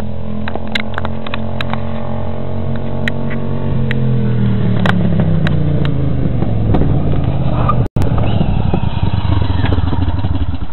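Custom EZGO Workhorse utility cart's engine running steadily, its pitch falling between about four and seven seconds in. It cuts out for an instant near eight seconds, then runs on close by.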